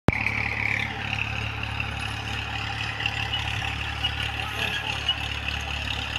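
Tractor engine running steadily at a distance, a continuous low hum, with a steady high hiss and small chirps over it.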